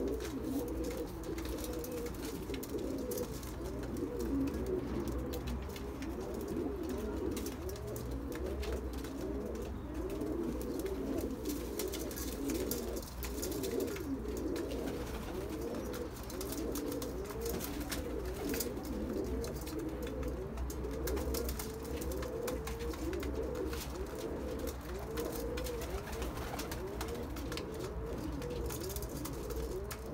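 A flock of domestic pigeons cooing continuously, many overlapping coos repeating on top of one another.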